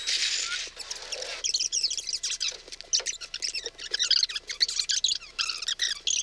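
Sped-up audio during a fast-forward: about a second and a half of hiss, then rapid, high-pitched chirping squeaks.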